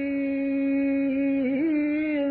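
A voice holding one long sung note in devotional chanting, steady in pitch and then wavering slightly near the end.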